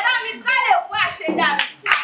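A woman's voice, then hand clapping breaks out near the end and carries on under further talk.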